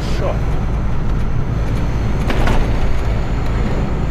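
Lorry engine and road noise heard from inside the cab while driving: a steady low drone, with a short rush of noise about two and a half seconds in.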